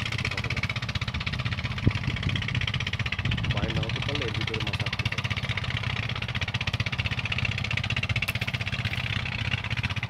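A small engine running steadily with a rapid, even beat, with a sharp click just before two seconds in and a brief voice about three and a half seconds in.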